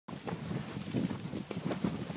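Water sloshing and splashing as a horse wades through deep pond water, in uneven surges, with wind buffeting the microphone.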